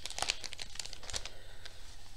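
Clear plastic floss-organizer pouch crinkling as it is handled, in a run of irregular small crackles.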